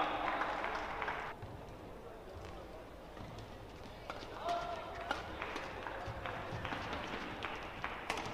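Badminton rally: sharp clicks of rackets striking the shuttlecock, and players' shoes moving and squeaking on the court mat, starting about four seconds in. Before that, a burst of voices dies away in the first second or so.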